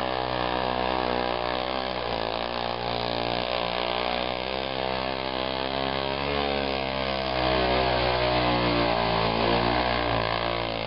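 ATV (four-wheeler) engine running and revving as the quad is driven through shallow water and mud, its pitch rising and falling with the throttle. It grows louder about seven seconds in.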